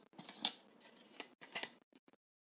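A plastic rolling ruler and drawing instruments handled and set down on paper: a series of short clicks and scrapes, the loudest about half a second in.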